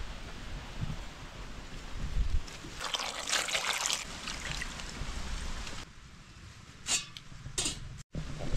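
Cashew juice trickling and pouring into a container, strongest about three seconds in, with two short sharp knocks near the end.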